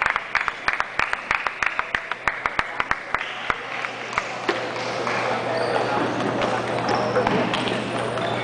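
Rapid, irregular clicks of table tennis balls striking paddles and tables, about four or five a second, for the first three and a half seconds. After that comes a steady babble of many voices, with only an occasional ball click.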